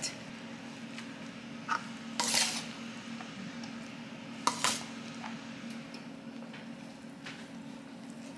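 A spatula scraping and clinking against a glass baking dish as rice is pressed into it: a few scattered scrapes and clicks, the loudest a scrape about two seconds in and two sharp clinks in quick succession a little past the middle, over a steady low hum.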